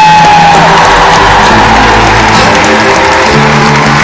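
Live rock band playing loudly through an arena's PA, with guitar over a steady bass line, heard from the audience seats. A held high note sounds near the start and drops away after about half a second.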